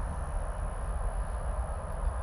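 Steady low hum and rumble of a reef aquarium's running equipment, its pumps and water circulation, with a faint steady high-pitched whine above it.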